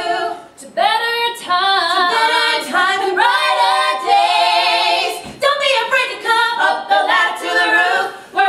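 Three women singing a musical theatre number together in harmony, holding notes with vibrato. The singing breaks off briefly about half a second in and again about five seconds in.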